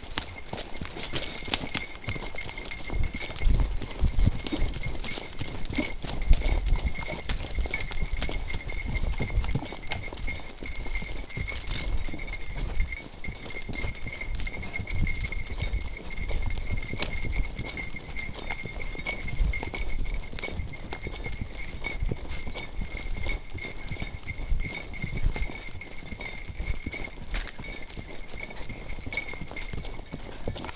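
Hoofbeats of a ridden horse on a dirt and gravel trail, an uneven clip-clop with low thuds. A faint steady high-pitched tone sits behind.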